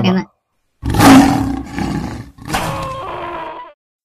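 A loud, rough vocal roar in two long bursts of about a second and a half each, just after a brief voiced sound at the start.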